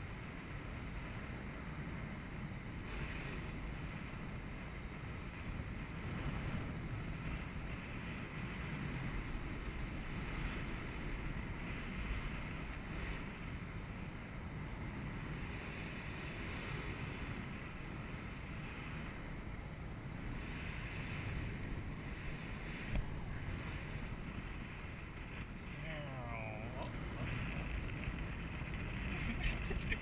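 Steady wind buffeting the microphone high on a parasail: a continuous low rumble with an even hiss over it.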